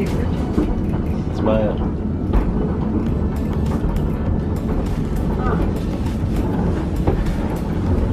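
Lookout Mountain Incline Railway car, cable-hauled, running along its track with a steady low rumble and frequent clicks and rattles from the wheels and car body. Faint voices come through now and then.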